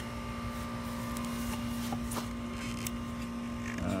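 A steady machine hum with a constant low tone, and a few faint clicks of plastic parts being handled.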